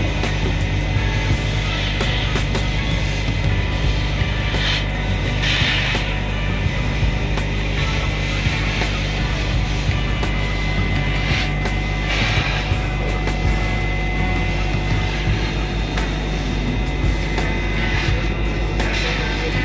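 Laser cutting machine running steadily as it cuts sticker sheets, with a brief higher whir a few times.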